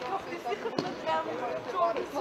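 Voices calling out during an indoor futsal game, with one sharp ball strike about three-quarters of a second in.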